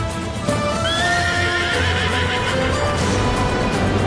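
A horse whinnies, one long wavering neigh starting about a second in, with hooves clattering, over dramatic background music.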